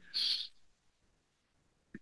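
A speaker's short breath between sentences, heard as a brief hiss, followed by about a second and a half of near silence.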